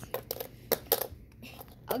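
A handful of scattered light clicks and taps from handling small objects, with a child starting to speak near the end.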